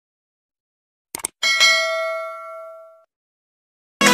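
A quick double click, then a single bell-like ding that rings and fades out over about a second and a half: a chime sound effect.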